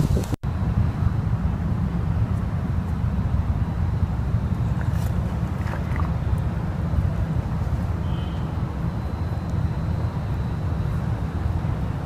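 Wind buffeting the microphone outdoors: a steady low rumble, broken only by a brief drop-out just after the start.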